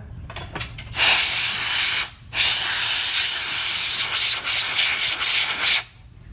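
Compressed-air nozzle hissing in two blasts, a short one starting about a second in and a longer one of about three and a half seconds after a brief break, blowing excess separator off a dental stone cast.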